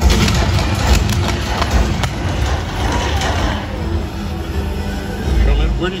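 Jet ski engine running as it speeds across the water, under loud music from the show's sound system. There is a sudden bang right at the start, sharp cracks about one and two seconds in, and a deep boom near the end.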